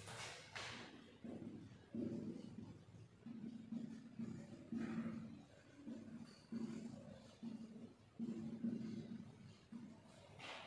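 A marker writing on a whiteboard: a series of short, low squeaks, each starting abruptly, at about one to two a second as the letters of a line are drawn. There is a brief rustle near the start.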